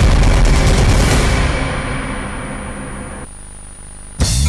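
A TV news title sting: a heavy, deep impact boom with a rushing whoosh and music. It fades steadily, its hiss thinning out after about a second, and drops to a faint tail about three seconds in.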